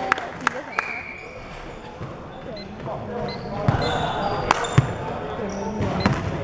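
Basketball bouncing on a hardwood gym floor as it is dribbled, a handful of sharp, irregularly spaced bounces in a large hall, the loudest in the second half. Short high squeaks, likely sneakers on the floor, come in between.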